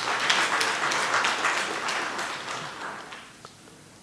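Audience applause, a dense patter of many hands clapping that dies away about three seconds in.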